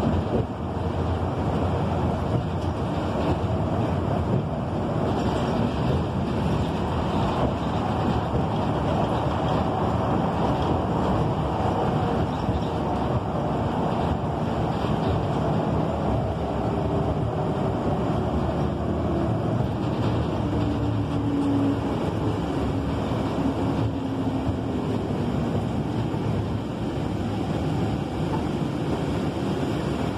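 Inside a moving city bus: steady engine and road noise while it travels at speed. A faint whine slowly falls in pitch in the latter half.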